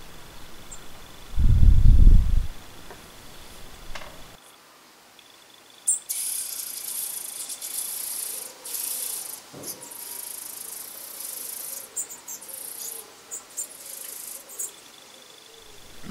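European robin nestlings begging with a high, hissing, rasping chatter in spurts as a parent robin comes to the nest, from about six seconds in until near the end. A brief low rumble comes about a second and a half in.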